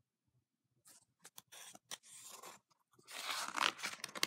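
A page of a picture book being turned: soft paper rustling with a few light clicks, growing louder near the end.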